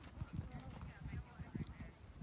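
A pony's hooves trotting on sand arena footing: a string of faint, dull thuds at uneven spacing as he is being brought back from trot to walk.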